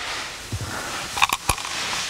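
Seat belt retractor and its webbing being handled: rustling of the fabric and plastic housing, with a few sharp clicks about a second and a quarter in.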